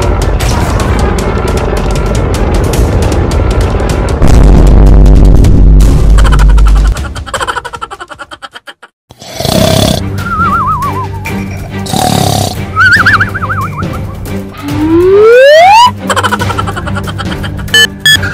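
Cartoon soundtrack: a dense, loud energy-beam effect over music, swelling about four seconds in, then fading out. After a brief silence, music returns with comic sound effects: two wobbling whistles and a rising slide-whistle glide.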